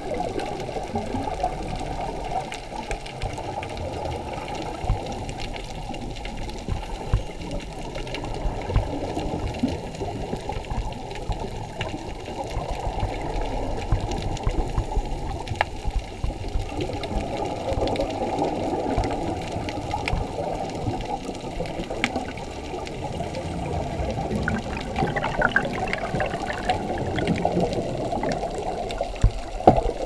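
Underwater water noise picked up by an action camera in its waterproof housing: a muffled, steady wash with scattered faint clicks, and a few louder bursts near the end.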